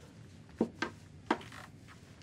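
Three short, sharp knocks, the first two close together and the third about half a second later, over quiet room tone.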